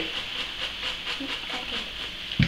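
Soft rustling and crinkling of hands rummaging through paper raffle tickets in a cloth bag.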